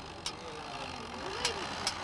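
Model train's small electric motor running steadily as it moves along its track through a model level crossing, with a few light clicks.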